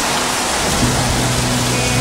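Steady heavy rain with soft background music. Held low notes come in about a second in.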